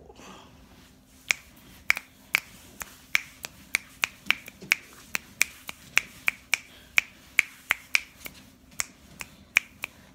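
Fingers snapping in a steady rhythm, about three snaps a second, starting a little over a second in.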